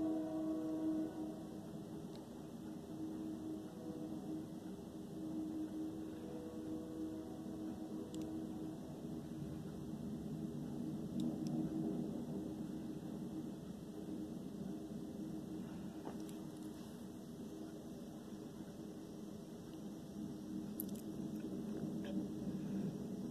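Low, steady rumble with a faint engine hum from a distant freight train at a railroad crossing.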